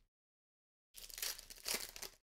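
Foil wrapper of a trading-card pack crinkling in someone's hands: an irregular crackle that starts about a second in and lasts about a second.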